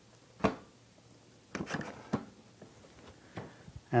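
Clicks and knocks of a Rifton Activity Chair's armrest being slid into its mount on the seat and set at height: one sharp click about half a second in, a few softer knocks and rattles around two seconds, and small ticks near the end.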